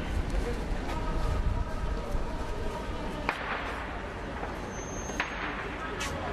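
Outdoor background of crowd voices and low rumble, broken by two sharp cracks about two seconds apart, each with a short trailing echo.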